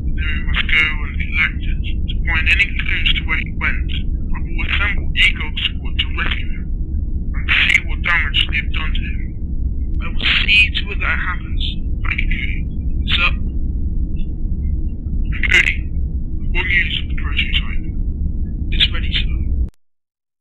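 A thin, tinny voice talking in short phrases, as if over a radio or comlink, over a steady low rumble of background hum; both cut off abruptly just before the end.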